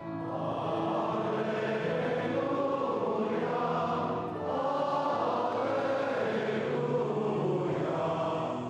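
Congregation singing together in unison, with a short pause for breath between phrases about four seconds in. This is the Gospel acclamation sung standing before the Gospel reading at Mass.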